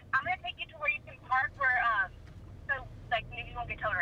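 The other party's voice on a phone call, heard through a smartphone's speaker: thin, narrow-sounding speech over the low hum of a car cabin.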